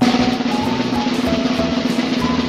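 Drum roll sound effect: a dense snare rattle that starts suddenly, with a steady low tone under it and light children's background music. It runs on for nearly three seconds as a build-up.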